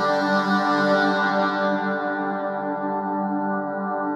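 Soundiron Olympus Choir Micro's 'FX 18 – Wahvelocity' effects preset: a processed choir-sample pad holding one sustained chord. Its bright upper overtones fade away over the first three seconds, leaving the chord darker.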